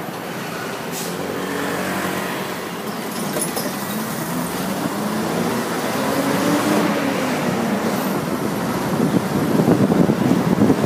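City bus engine pulling away from aboard the bus, its pitch climbing and dropping twice as it works through the gears, over road and traffic noise. Wind buffets the microphone near the end.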